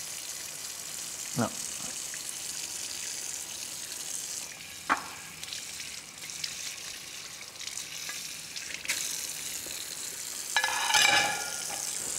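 Tap water running into a kitchen sink while dishes are scrubbed with a sponge: a steady hiss with a sharp clink of crockery about five seconds in.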